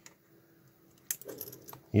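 A sharp click about a second in, then a few lighter clicks and rattles as a small plastic digital kitchen thermometer is handled.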